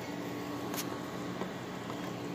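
Steady low background hum with a faint steady tone, and a single faint click a little under a second in.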